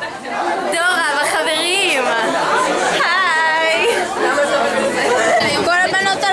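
Several young women's voices talking over one another, with chatter from others around them.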